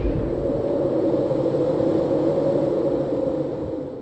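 Cinematic logo sound effect: a sustained drone with steady held tones that fades out near the end.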